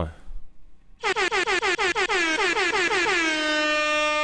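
Air horn sound effect for a channel intro: from about a second in, a rapid stutter of short blasts that runs into one long, steady blast.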